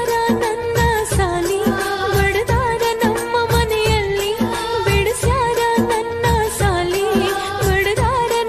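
Kannada janapada folk song: a winding lead melody over a steady drum beat.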